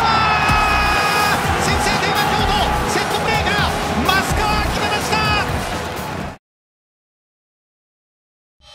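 Music mixed with excited, drawn-out voices from a football match highlight. It cuts off suddenly about six seconds in, then there is silence.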